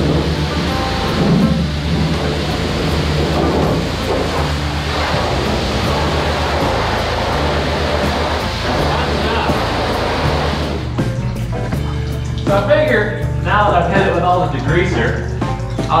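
Background music with a steady bass line, over the hiss of a car-wash pressure washer spraying the grimy chassis of a pickup. The spray stops about eleven seconds in, and a voice in the music comes to the fore.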